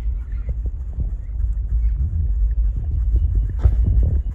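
Two dogs licking and lapping whipped cream off paper plates: soft wet smacks and clicks of tongues and jaws, with a louder one near the end, over a steady low rumble.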